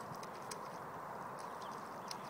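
A dog rooting in wet grass and mud: faint, scattered small clicks and rustles over a steady low hiss.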